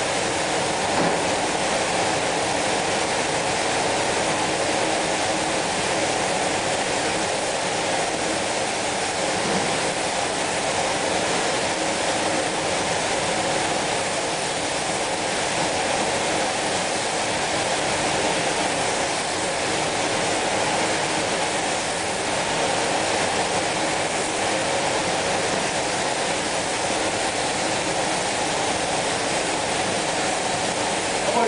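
Steady hiss of compressed-air spray guns spraying spray-chrome (silvering) chemicals onto a large form, with a faint steady hum underneath.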